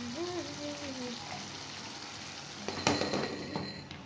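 Bean curry sizzling in a non-stick kadai on a gas stove. About three seconds in, a glass lid is set on the pan with a sharp clink and a brief ring.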